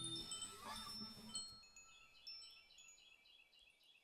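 Closing bars of the music: high chime tones ring out and die away, and a low held note stops just after the start. A faint run of quick high blips follows, fading to near silence by the end.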